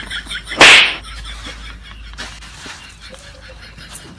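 One loud open-hand slap, a short smack of noise lasting a fraction of a second, just over half a second in; after it only low background noise.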